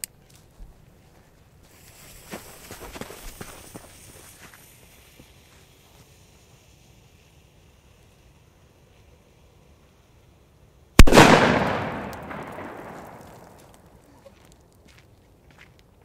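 "The King" firecracker from Fire Event: its lit fuse fizzes briefly near the start, then after a long quiet it goes off with a single very loud bang about eleven seconds in, echoing and dying away over about three seconds.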